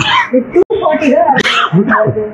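A woman speaking, cut off for an instant a little over half a second in.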